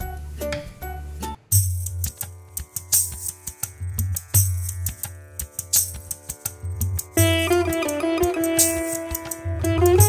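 Background music with a plucked-string melody. About a second and a half in, a fuller part with a steady beat and bass begins, and a held melody line joins near the end.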